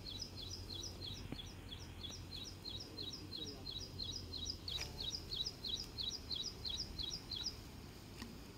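A bird repeating a high two-note chirp, each note dropping in pitch, about three times a second for most of the time before stopping near the end, over a steady low background rumble. A brief sharp sound comes about halfway through.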